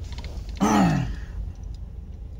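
A man's drawn-out wordless vocal sound, falling in pitch, about half a second in. It sits over the steady low rumble of car road noise inside the cabin.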